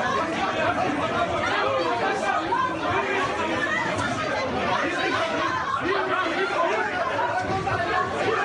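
A crowd of voices talking over one another at an even level throughout, the sound of a scuffle among lawmakers packed into a meeting room.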